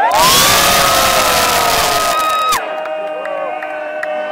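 Concert crowd cheering and shouting, loud and close, with voices held on long notes. The loud part stops abruptly about two and a half seconds in, leaving quieter held voices.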